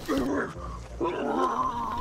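Rough, growling, animal-like vocal sound in two stretches, with a lull around the middle.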